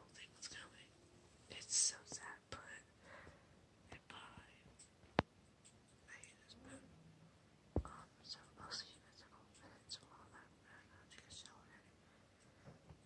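A woman whispering softly, in short breathy bursts, with two sharp clicks about five and eight seconds in.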